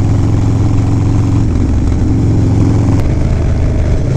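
Harley-Davidson Low Rider S's Twin Cam 110 V-twin with an aftermarket Fab 28 exhaust, running under way on the road. Its note steps up about three seconds in.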